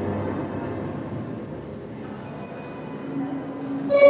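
Live ambient electronic music: a rumbling, noisy drone with faint held tones slowly fades away, then a loud new sustained chord rich in overtones comes in just before the end.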